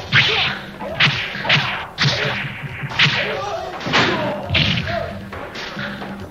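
Dubbed fight-scene sound effects: a quick run of punch and kick hits, each a sharp whoosh-and-thwack, coming about every half second to a second.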